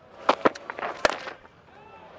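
Cricket bat striking a fast delivery off the top end of the bat, heard as sharp knocks among a few clicks, with crowd noise after the shot.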